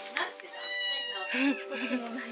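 A cat meowing once, a high drawn-out meow lasting under a second, over background music.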